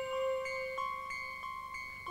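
A few soft chime-like musical notes sound one after another, each left ringing so they overlap, slowly fading.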